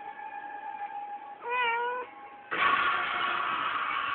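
A domestic cat meows once, about a second and a half in: a short call that rises and then falls. A faint steady tone runs underneath, and louder music cuts in suddenly near the end.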